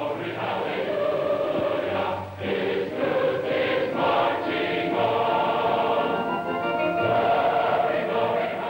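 A choir singing, many voices holding sustained chords that change every second or two.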